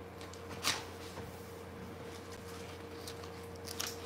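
Quiet room tone with a steady low hum and a few brief soft clicks and rustles, one about a second in and another near the end.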